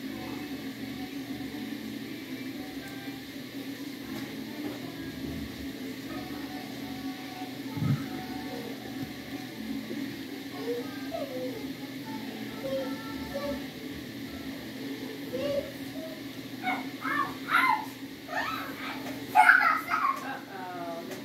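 Indistinct voices in the background over a steady low hum, with a single knock about eight seconds in; the voices grow louder near the end.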